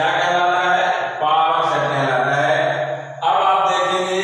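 A man's voice chanting in long, sustained phrases, with a short break about a second in and another just after three seconds.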